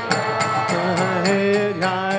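Devotional chant sung to a steady pulse of small hand cymbals (kartals) striking about four times a second, over held pitched tones.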